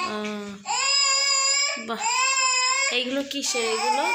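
Baby crying in long, high wails, about one a second, three in a row.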